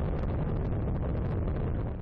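Space Shuttle's rocket engines and solid rocket boosters running during ascent: a steady, deep rumble with no distinct tones.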